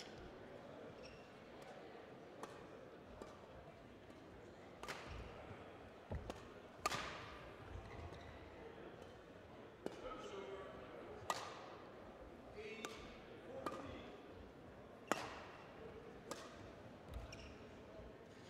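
Badminton rackets striking a shuttlecock in a rally: single sharp smacks every second or two, each echoing in a large hall, over a faint murmur of voices.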